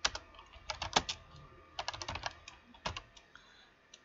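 Computer keyboard being typed on: scattered keystroke clicks in short irregular runs.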